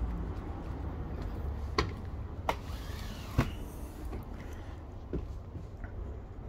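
Footsteps climbing a travel trailer's fold-out metal entry steps: a few sharp knocks, irregularly spaced, mostly in the first half. Under them runs a low steady rumble of road traffic.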